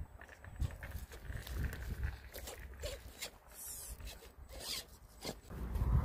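Redcat Gen7 RC crawler crawling over shredded wood debris: a faint electric-motor and gear whine with scattered crackles and snaps of sticks under the tyres.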